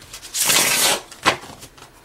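Tarot cards being swept together and handled on a table: a rustling scrape lasting just over half a second, then a single sharp tap about a second in.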